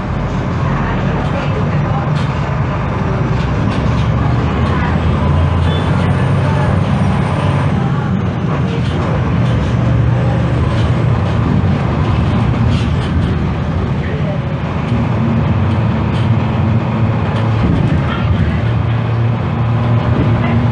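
Tatsa Puma D12F city bus's front-mounted six-cylinder diesel engine running with a steady low drone. Its pitch steps up about fifteen seconds in.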